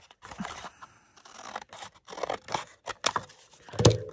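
Scissors cutting through a thin cardboard food box in a string of separate snips, with a louder knock near the end.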